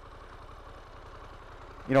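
Faint, steady low background rumble in a short pause between words.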